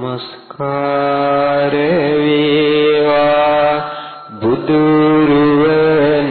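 A Buddhist monk chanting into a microphone in long, drawn-out notes at a steady pitch. One phrase is held for several seconds, breaks off briefly about four seconds in, and then a second phrase begins.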